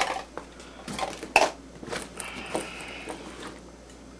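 Small gear items being handled and set down: a few light clicks and knocks, the sharpest about a second and a half in, then a short rasping scrape.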